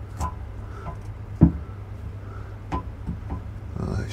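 A few light knocks and clicks from hands working a plumbing fitting overhead, the loudest about a second and a half in, over a steady low hum.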